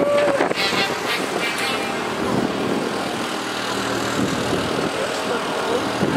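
A steady low engine hum under outdoor street noise, with brief voices in the first second or two.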